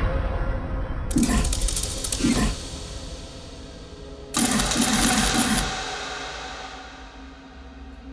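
Horror film soundtrack effects: a sudden loud hit, then two bursts of rapid rattling with wavering tones, about a second in and again at about four and a half seconds, then fading away.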